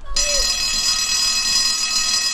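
Electric school bell ringing loudly and steadily, starting just after the beginning: the bell for the start of class.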